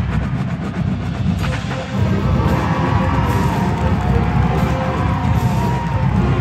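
Marching band playing its show music, with a dense low-pitched band sound throughout and a wavering, gliding higher tone coming in about two and a half seconds in.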